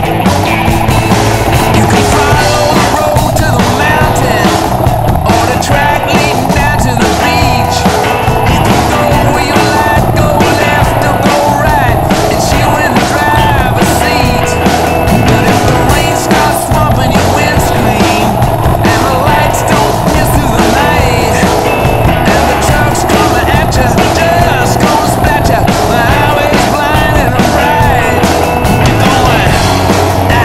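Yamaha XT600 supermoto's single-cylinder four-stroke engine running steadily under way, mixed with continuous wind and road noise.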